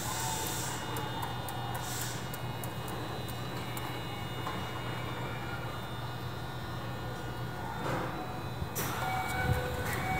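Keikyu 600 series electric train standing at the platform, its equipment giving a steady low hum with faint high whines. Near the end comes a short hiss, after which a few faint steady tones begin.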